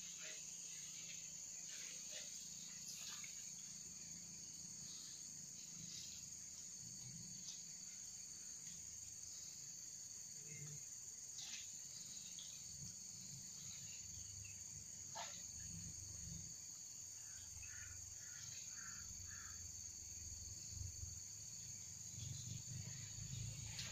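Faint, steady, high-pitched chorus of forest insects, with a few soft ticks now and then.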